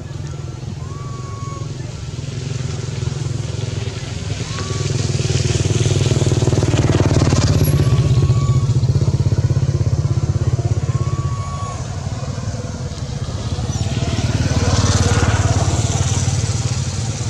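A small engine running steadily with a regular low pulse, getting louder in the middle and again near the end. A few short high whistling calls come over it.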